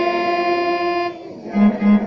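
Casio mini electronic keyboard being played: a held note sounds for about a second and stops. After a short gap, a new phrase of short, separate low notes begins.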